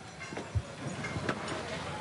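Stage crew dismantling a drum kit: a short dull knock about half a second in and a few light clicks, over a steady background of crew chatter and stage noise.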